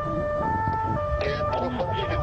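Police two-tone siren alternating between a lower and a higher note about every half second, heard from inside the moving car over engine and road rumble.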